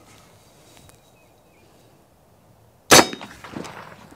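A single sharp, loud report from a .45-caliber AirForce Texan big-bore air rifle firing about three seconds in, followed by a short ringing tail.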